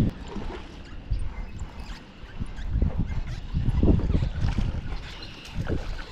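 Low, uneven rumble of wind buffeting the microphone, with irregular louder bumps of handling noise.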